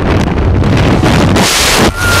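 Wind rushing hard over the microphone at the open door of a skydiving plane, swelling into a louder blast near the end as the tandem pair exits into freefall.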